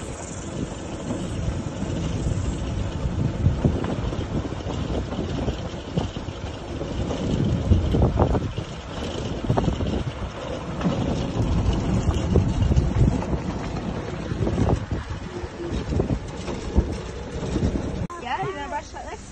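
Wind buffeting the microphone over the low rumble of an open-sided cart driving along a rough gravel track, with irregular knocks and rattles as it goes over bumps.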